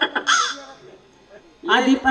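A performer's voice through the stage microphone: a short, loud cry with bending pitch near the end, preceded by a brief hissy burst about a quarter second in as music cuts off.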